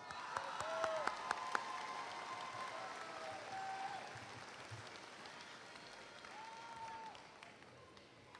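Audience applauding, with individual claps standing out and a few short cheering calls, dying away over the seconds.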